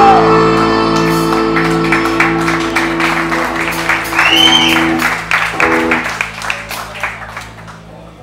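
Live rock band ending a song: a guitar-and-bass chord held and ringing over repeated drum and cymbal hits, growing steadily quieter.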